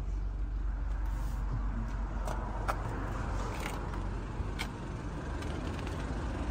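Steady low outdoor background rumble, with a few light clicks and taps scattered through the middle.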